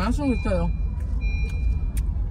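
Low rumble of a car moving in slow traffic, heard from inside the cabin, with a high electronic beep that sounds in steady pulses about once a second. A short drawn-out voice call with rising and falling pitch comes at the very start.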